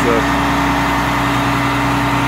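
Diesel engine of a heavy grapple truck idling steadily, a constant even drone.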